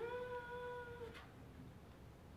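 A person's voice holding one steady pitched note for about a second, sliding up into it at the start: an improvised vocal sound effect of a ship's air conditioning.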